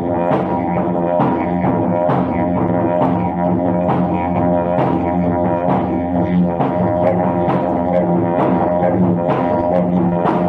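A wooden didgeridoo played as one continuous drone, with its overtones shifting slightly. Short accented pulses are worked into it roughly twice a second.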